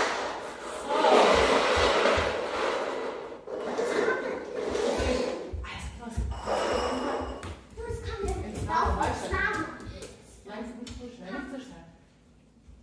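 Indistinct talking, with scattered light thuds from plastic cups set down and bare feet on a wooden floor.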